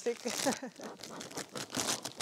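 Plastic sheet and mesh screen crinkling and rustling in irregular crackles as the cover is peeled off the top of a beehive.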